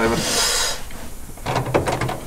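A short breathy hiss just after the start, then a few light knocks and rustles near the end as a man shifts his body and legs in the cramped seat of a roll-caged race car.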